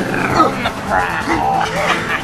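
Repeated short, dog-like barks and yelps, loud and pitched, over a soundtrack.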